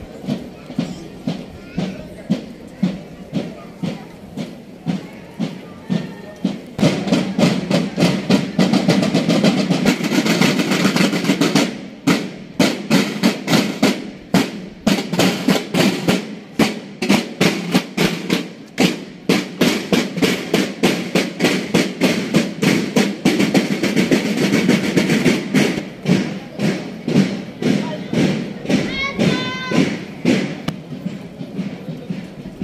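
School marching drum corps playing a parade cadence on snare and bass drums, a steady beat about twice a second. The drumming is faint at first and becomes much louder and fuller about seven seconds in as the drummers pass close.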